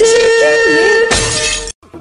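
Cartoon sound effect of glass shattering, a crash about a second in over a sustained note; it cuts off abruptly.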